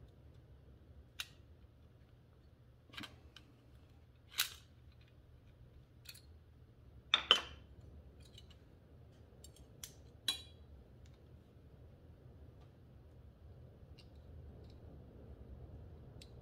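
Small steel parts of a truck door-handle regulator shaft clicking and clinking as a spring and clamp are pried into place by hand and with a screwdriver. About ten sharp, scattered clicks, the loudest a double click about halfway through, over a low steady hum.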